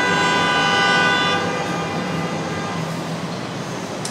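A horn outside gives one long, steady blast of several notes at once. It fades away about two seconds in, leaving a steady low hum.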